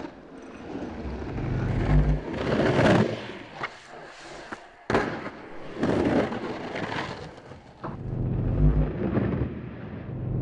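Skateboard urethane wheels rolling on the concrete walls of an empty pool, a rumble that swells and fades with each carve and grind, with a sharp board crack about five seconds in.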